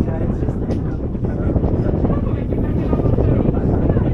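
Steady low rumble of a moving passenger ferry heard from the open deck, with wind buffeting the microphone.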